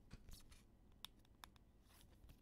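Near silence with a handful of faint, sharp clicks and light rustles from trading cards being handled.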